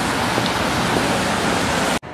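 Steady, loud rushing hiss of rain falling on a wet city pavement, cutting off suddenly at the end.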